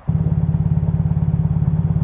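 A narrowboat's diesel engine idling steadily with a loud, fast, even chugging beat. It is louder than it should be, which a neighbour puts down to a cracked exhaust.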